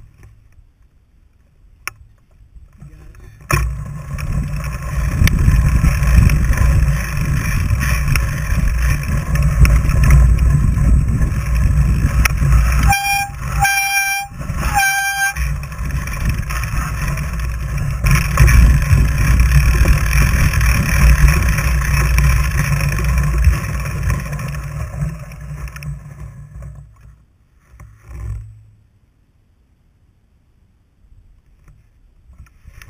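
A fat bike's knobby tyres rolling over a packed snow trail, heard as a loud, steady rumble through a camera mounted on the bike. It starts about three and a half seconds in and fades out a few seconds before the end. Three short, high beeps sound in the middle.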